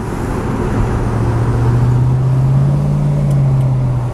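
1972 Chevelle's engine heard from inside the cabin while driving, its note rising in pitch over the first couple of seconds as the car picks up speed, then holding steady over road noise.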